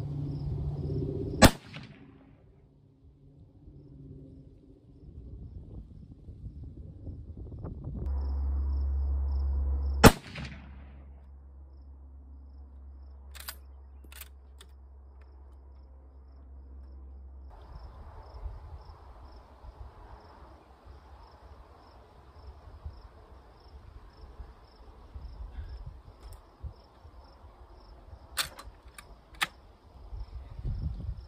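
Two rifle shots from a Savage 99 lever-action in .308, about eight and a half seconds apart, each a sharp crack with a short echo. A few much lighter clicks follow later.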